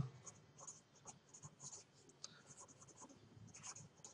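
Faint scratching of a pen writing on lined paper: a quick run of short strokes.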